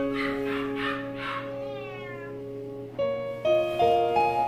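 A domestic cat meowing a few times in the first second and a half, the last call falling in pitch, over piano background music.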